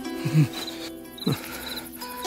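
Horror film background score: sustained held tones with short, low falling hits about once a second.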